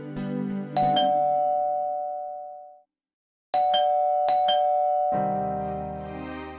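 Electronic doorbell chime ringing: one ring about a second in that fades away, then another ring with several quick repeated strikes, each ringing on. Background music takes over near the end.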